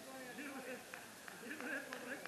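Indistinct voices of people talking, too unclear for words to be made out, with a few light clicks among them.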